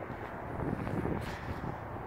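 Wind on the microphone: a steady, low rumble of outdoor air noise.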